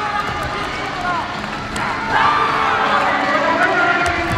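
Many voices calling out together, as a yosakoi dance team shouts during its performance, growing louder about halfway through.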